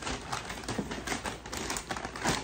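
Gift wrapping paper crinkling and crackling as a parcel is pulled open by hand, a dense run of short crackles.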